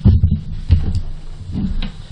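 A few heavy low thumps and knocks picked up by the desk microphone as a man pushes back his chair and stands up from the table, about three main thuds.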